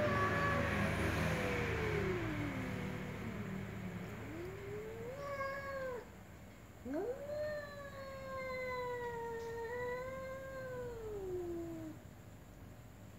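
Cats giving slow, drawn-out meows. The first is a long call that falls in pitch, then a short rising meow comes about four seconds in, then a long call of about five seconds that sinks slowly to a low pitch and stops just before the end.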